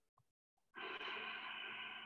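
A faint, slow exhale lasting about two seconds, starting about three-quarters of a second in, as in a held yoga breath.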